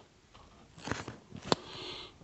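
Clicks and crackles from a gas boiler's control board and its plastic housing and wiring being handled by hand, with one sharp click about a second and a half in, the loudest sound, followed by a brief hiss.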